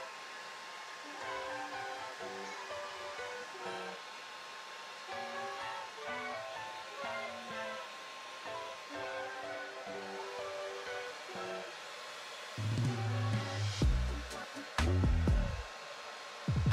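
Background music with a plucked, guitar-like melody over the steady hiss of a Hot Tools hair dryer running on low heat through a diffuser. Loud low rumbling comes in near the end.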